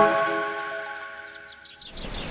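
Background music, a xylophone-like mallet tune, fading out, with a flurry of short, high bird chirps over the fade in the second half.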